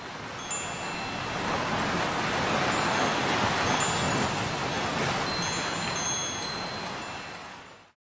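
Wind chimes tinkling with scattered high notes over a steady rushing wash like ocean surf. The whole sound swells gently through the middle and fades out at the end.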